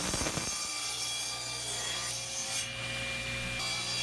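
Grizzly table saw ripping a walnut board to width, the blade cutting steadily with a faint motor hum beneath; the high cutting hiss drops away near the end as the cut finishes.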